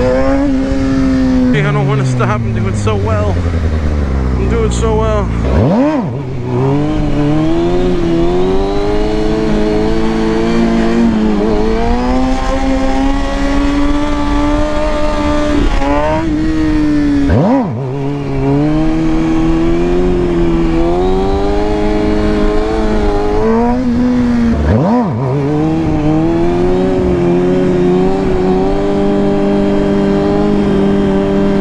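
Kawasaki Ninja sportbike engine revving under stunt riding: the revs fall away over the first few seconds, then climb in long pulls, each broken by a brief sharp dip about six, seventeen and twenty-five seconds in.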